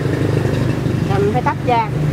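A steady low mechanical hum, like an engine running, under a voice that speaks briefly in the second half.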